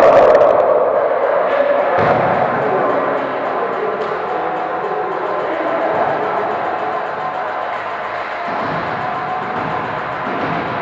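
Echoing sports hall during an indoor volleyball rally: players' voices calling out, with sharp ball hits about two and four seconds in.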